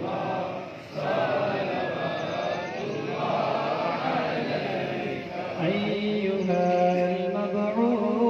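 Men's voices chanting a devotional recitation together. In the last couple of seconds one voice holds long, steady notes.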